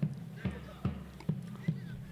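A low steady hum with four light knocks, evenly spaced about two a second.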